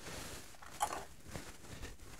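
Faint handling noise with a few soft clicks, the clearest about a second in, as a pair of scissors is lifted off a pegboard hook.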